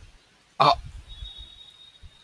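A man's short exclamation, "oh", about half a second in.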